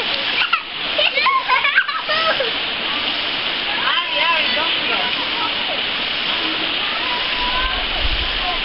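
Steady rushing of a rocky mountain stream pouring into a shallow pool, with splashing from children wading in it. High children's voices call out a few times in the first half.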